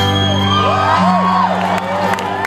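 A live band's sustained chord ringing on while audience members whoop and cheer over it; scattered clapping starts near the end.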